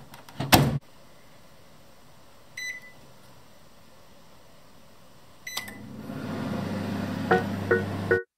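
Microwave oven door shut with a knock, then two short keypad beeps as three minutes are set and the oven is started, after which the microwave runs with a steady low hum. Piano notes come in near the end.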